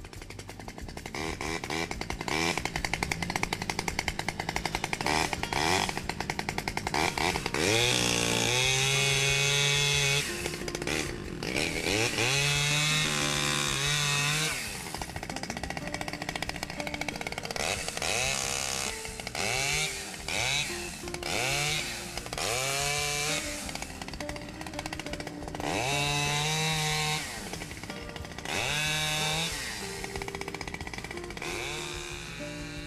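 A chainsaw running at a fast idle, then revved hard again and again from about eight seconds in. Each rev rises sharply in pitch and holds for a second or two before dropping back, as it cuts into brush at the water's edge.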